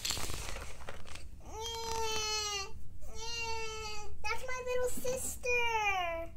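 A young child's voice making four long, high-pitched whining calls, each falling a little in pitch, in pretend play for a toy dog, after a brief rustle of handled toys.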